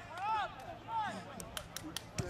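Distant voices cheering a soccer goal: two short yells that rise and fall in pitch in the first second, then a few faint clicks.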